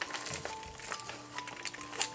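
Soft background music with held, slowly changing notes, over light crinkling and clicking of parcel packaging being cut open with a snap-off utility knife.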